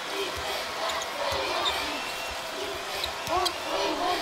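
A basketball being dribbled on a hardwood court, a string of low thumps, over the steady murmur of a large arena crowd.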